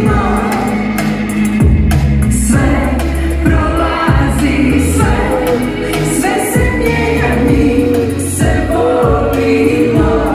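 Live pop-rock band playing with a female lead singer, her voice sung with vibrato over electric guitar, bass guitar and drums keeping a steady beat.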